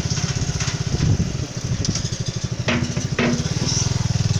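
Motorcycle engine running while the bike is ridden, a steady fast low pulse that briefly eases about a second and a half in.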